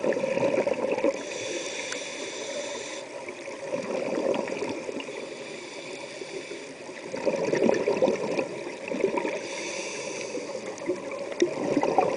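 Scuba diver's breathing through a regulator underwater. Bursts of exhaled bubbles gurgle near the start and again from about seven to nine seconds, and a hissing inhale through the regulator comes in between, twice.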